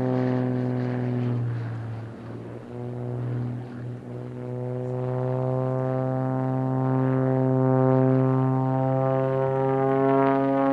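Propeller-driven aerobatic airplane passing with a steady, droning engine-and-propeller tone; the tone fades and wavers about two to four seconds in, then comes back strong.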